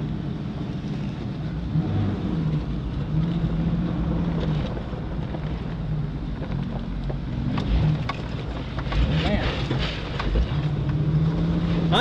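Off-road vehicle's engine running steadily at low trail speed, heard from inside the cab, with scattered knocks and rattles as the vehicle bumps along a rough dirt trail.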